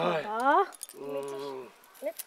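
Voices speaking with long, drawn-out syllables, with a light jingle of bangles.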